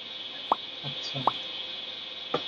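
Two short pop sound effects, the first about half a second in and the second just past a second, from an animated subscribe-button overlay being clicked. A steady hiss runs underneath.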